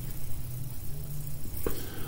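A pause in a man's talking filled by a low, steady hum, with a short sound near the end as his voice starts again.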